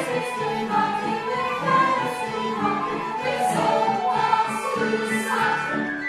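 A choir singing an operatic passage, several voices together in shifting harmony.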